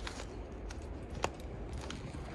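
Indoor room tone: a steady low hum with a few soft clicks spaced about half a second or more apart.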